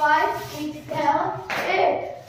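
An unaccompanied voice sounding out the dance rhythm in short sung phrases, with a hand clap about one and a half seconds in.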